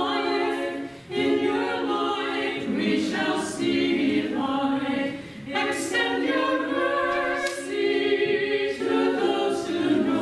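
A small choir of nuns singing Orthodox liturgical chant a cappella, in sung phrases with short pauses between them.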